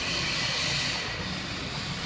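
Steady hiss with a low hum underneath: workshop background noise, with no distinct event.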